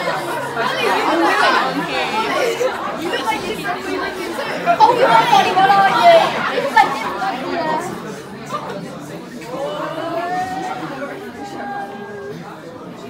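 Several people chattering at once, their voices overlapping, dying down after about eight seconds.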